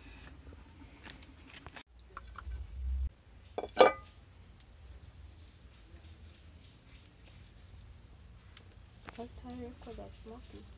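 Cookware being handled: after a low rumble, a sharp metallic knock with brief ringing comes about four seconds in, typical of a metal cooking pot or basin being set down or struck. Faint voices follow near the end.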